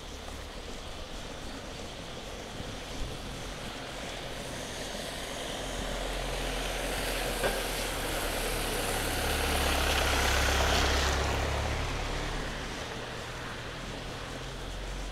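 A van driving past on a wet road. Its engine and the hiss of its tyres on the wet asphalt grow louder, peak about ten seconds in, then fade as it goes by. There is a single sharp click about seven and a half seconds in.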